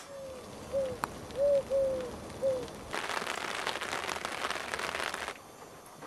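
Five short pitched notes in the first three seconds, then about two seconds of a steady hiss of heavy rain that cuts off suddenly.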